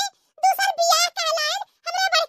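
Speech only: a very high-pitched cartoon character's voice talking in two phrases, with a brief pause between them.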